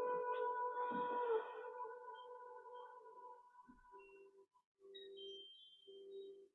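Singing bowl ringing with a few steady overtones, fading away over the first three seconds or so. Fainter, broken low tones follow.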